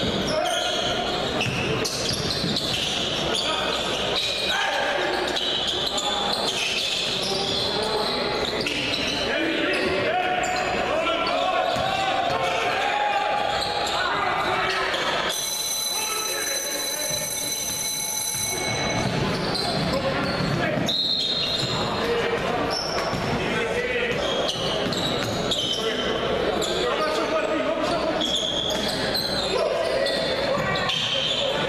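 Sound of a basketball game in a large gym: voices echoing in the hall and a ball bouncing on the hardwood court. A little past halfway a steady high-pitched tone sounds for about three seconds.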